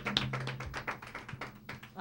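A small audience clapping for a contestant just introduced. The claps are scattered and irregular and die away over the two seconds, over a low steady hum.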